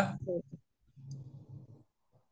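The end of a man's spoken word with a couple of mouth clicks in the first half-second. It is followed by faint, muffled low sound from about a second in, which is typical of a student's open microphone on an online call.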